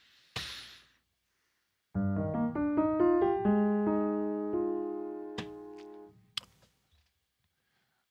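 Sampled Yamaha upright piano (VI Labs Modern U virtual instrument) with its felt sordino pedal engaged, playing a slow rising arpeggio from about two seconds in: notes build one by one into a held chord that fades away by about six seconds.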